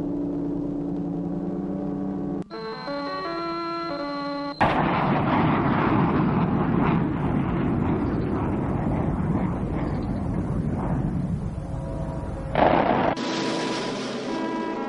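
Held orchestral chords, then, about four and a half seconds in, a sudden loud noisy sound effect of the explosion or rocket-blast kind that carries on for about eight seconds and eases off slightly, with a short louder burst before the held chords come back near the end.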